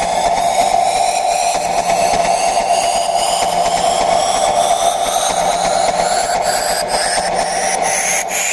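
Techno breakdown with no kick drum: a rising sweep climbs steadily in pitch over a held tone, while faint ticks come faster toward the end, building up to the drop.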